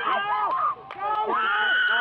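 Spectators shouting encouragement to a swimmer in overlapping voices, with one long held call near the end.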